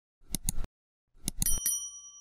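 Subscribe-button sound effect: a pair of sharp clicks, then about a second later three more clicks and a bright bell ding that keeps ringing.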